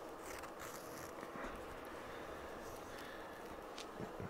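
Faint rustling and a few light clicks of fingers handling a needle and thread, over a low room hum.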